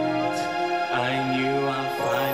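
Slow pop ballad: sustained backing chords with a male voice singing over them into a handheld microphone, holding a note in the second half.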